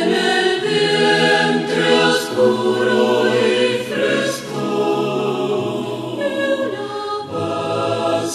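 Mixed choir of men's and women's voices singing in sustained, multi-part harmony, the chords shifting every second or two.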